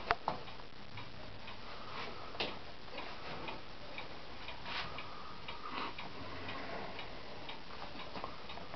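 Faint, fairly regular ticking in a quiet room, with two sharp knocks right at the start.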